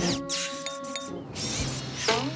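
Cartoon background music, opened by a falling whoosh sound effect and a few light mechanical clicks as a pup-pack tool arm with tweezers extends.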